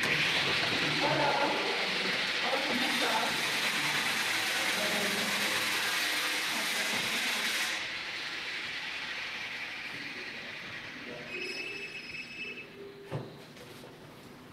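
Steady loud hiss and rustle from the microphone of a handheld phone camera being carried up a stairwell, cutting off abruptly about eight seconds in. Fainter noise follows, with a brief high tone and a single knock near the end.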